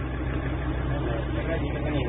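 Minibus engine droning steadily, heard from inside the passenger cabin, with faint passenger chatter over it.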